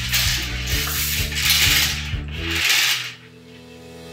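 A string of plastic beads on yarn rattling and scraping along a wooden tabletop as it is pulled straight, in three swells about a second apart.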